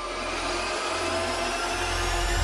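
A steady whirring noise made up of several faint steady tones, slowly growing louder.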